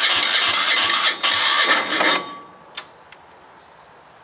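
Small diesel engine in a garden tractor being turned over, loud and uneven for about two seconds with a short break about a second in, then stopping. A single click follows near three seconds.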